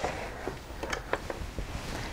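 The sewing machine stopped: a few light clicks and rustles as the quilted sample is handled and drawn out from under the needle and presser foot.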